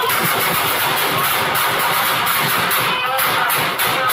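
Rapid gunfire inside a house, recorded by a police officer's body camera: several shots a second in a dense, loud run.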